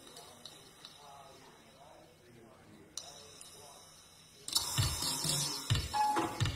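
Faint voices over room tone, with a single click about three seconds in. About four and a half seconds in, the live band starts playing loudly with low, uneven hits.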